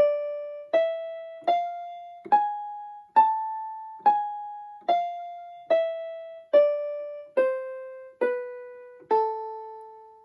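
Electronic keyboard in a piano voice playing the A minor scale (with G sharp) one note at a time, about a note every 0.8 s: rising to the top A about three seconds in, then stepping back down to the low A, which is held and fades at the end.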